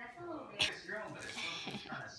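A young woman laughing, with a sharp click a little over half a second in.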